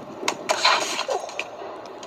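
Skates landing on concrete after a jump down steps and the skater falling: sharp knocks, then a noisy clatter and scrape in the first second, and one more knock near the middle.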